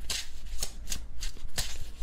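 Tarot deck being shuffled by hand: a quick run of crisp card flicks, about a dozen in two seconds.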